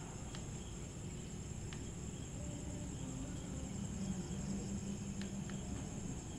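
A few faint clicks of a Samsung keypad phone's buttons being pressed, over a steady high-pitched tone and a low hum.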